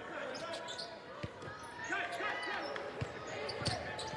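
A basketball dribbled on a hardwood court, bouncing a few times over steady arena crowd noise with scattered voices.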